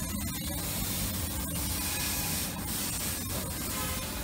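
Steady outdoor background noise: a constant hiss with a low rumble underneath, and no distinct events standing out.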